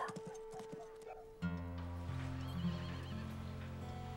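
A horse's hoofbeats on dry dirt as it is ridden away, then a short wavering whinny. A low held musical chord comes in suddenly about a second and a half in and carries on underneath.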